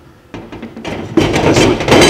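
Steel valve spring compressor clattering and scraping against a sheet-metal tray as it is picked up and moved, a rough metallic rattle that grows loud about a second in.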